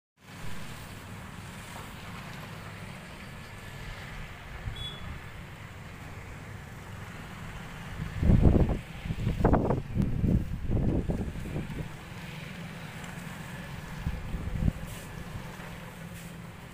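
Wind buffeting the microphone over a steady low rumble, in several loud gusts for a few seconds around the middle.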